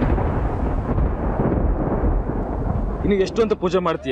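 A deep, thunder-like rumble sound effect slowly fading away. About three seconds in, a voice starts singing with a wavering pitch.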